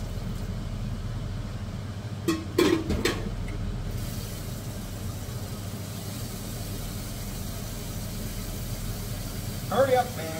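Steady low hum of a kitchen range-hood fan running over pots boiling on the stove, with a brief clatter of a few knocks about two and a half seconds in.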